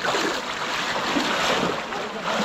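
Muddy pond water splashing and sloshing around people wading and working bamboo fish traps, under a steady rushing noise like wind on the microphone.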